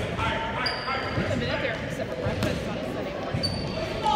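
Basketball bouncing a few times on a hardwood gym floor, echoing in the large hall, with a few short high squeaks and faint background chatter.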